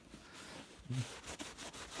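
Faint rubbing and handling of a leather work shoe and a damp cloth rag, with a few small clicks. There is a short low vocal hum about a second in.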